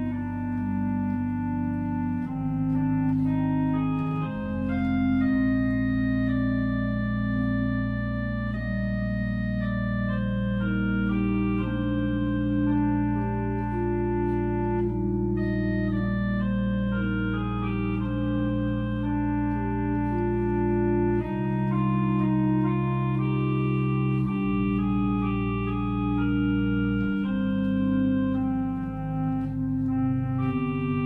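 Organ playing slow sustained chords, with deep bass notes held for many seconds under moving upper voices.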